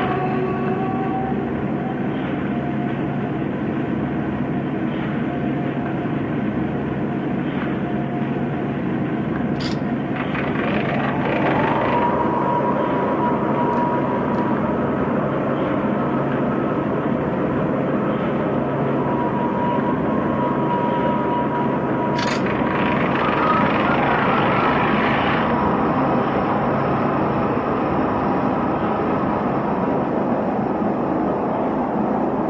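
A loud, steady rumbling drone of dense noise over a low hum, in the manner of an industrial ambient film soundtrack. A higher tone rises in about eleven seconds in and holds, and two short sharp clicks sound, about ten and twenty-two seconds in.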